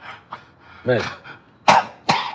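A man's harsh cough near the end, sudden and the loudest sound here, after a single spoken word.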